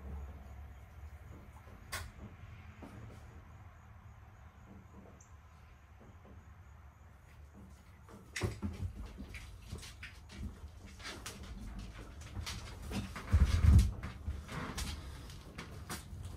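Someone moving about inside a small cargo-trailer camper: a single sharp click about two seconds in, then from about eight seconds in a run of knocks and clicks, with heavy low thumps on the trailer floor near the end.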